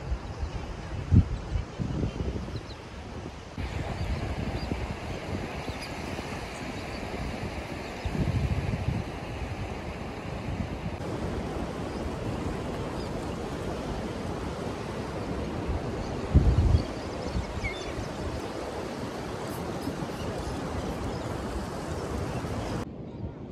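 Wind buffeting the microphone over a steady wash of ocean surf, with strong gusts about a second in, around eight seconds and around sixteen seconds.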